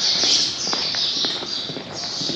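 Many small birds chirping together in a steady chorus, with a few soft footsteps on stone about a second in.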